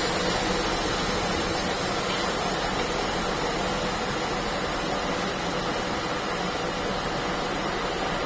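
Bubble-remover autoclave for OCA screen lamination venting its pressurised chamber after being stopped: a steady hiss of escaping air.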